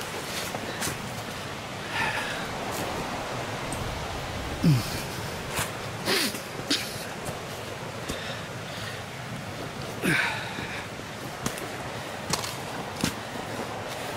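A person breathing hard while climbing a steep rocky slope: short breaths and grunts every few seconds over a steady background hiss.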